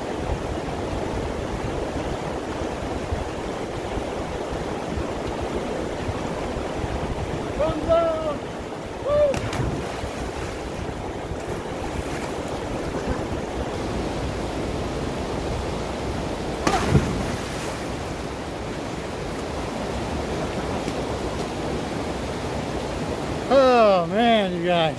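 Steady rushing of a small mountain river cascading into a rock pool. Two short shouts come about a third of the way in, and there is one sudden thump about two-thirds through.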